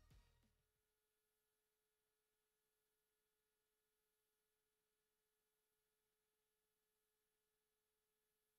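Near silence: the last of the music dies away within the first second, leaving only a very faint steady tone.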